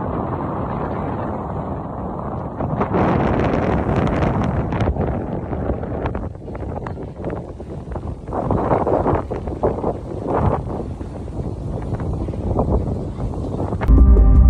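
Steady rushing, rumbling background noise, swelling louder about three seconds in and again around nine seconds.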